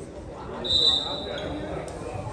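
Referee's whistle blown in one shrill, steady blast a little under a second long, starting just over half a second in and trailing off. A basketball bounces once near the end, with voices in the gym behind.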